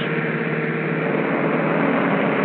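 A steady drone with a few held tones over the hiss of an old soundtrack.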